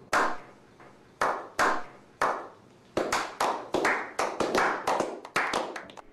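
A slow clap: single hand claps, each with a short echo, starting about a second apart and speeding up into a quicker run of claps in the second half.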